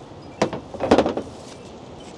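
Packing material from a winch box being handled: two short rustling sounds, the second a little longer, about half a second apart.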